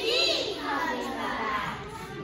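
A young child speaking in a high voice.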